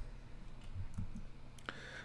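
A few faint, light clicks from a computer at the desk, spread out over two seconds, the clearest about three-quarters of the way through, over a faint steady low hum.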